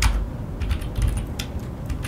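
Computer keyboard typing: a short run of separate keystrokes as a short comment is typed.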